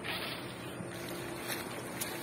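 Steady, low-level idle of the Eicher 5660 tractor's diesel engine, with wind noise on the microphone.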